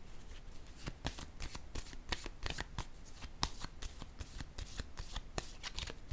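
Tarot cards being shuffled by hand: a quick, irregular run of card flicks and slaps starting about a second in.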